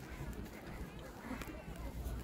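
Faint outdoor ambience: distant people talking, over a steady low rumble of wind on the microphone.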